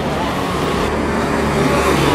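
A car passing close by on a narrow street: a steady low engine rumble with road noise.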